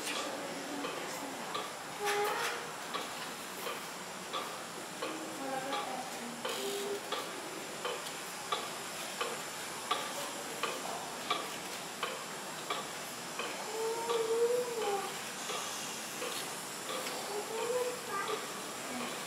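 Footsteps on a hard floor, a soft click about every two-thirds of a second, over a steady hiss of room noise and faint snatches of distant voices.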